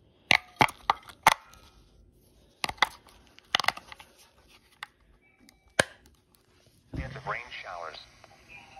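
AA batteries and the plastic battery compartment of an AcuRite 8550 handheld weather radio being handled: a series of sharp clicks and knocks as the batteries are pushed in, with a brief beep in between. Near the end, a weather forecast voice comes from the radio's small speaker.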